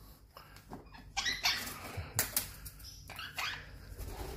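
A monk parakeet giving a few short, scratchy calls, starting about a second in.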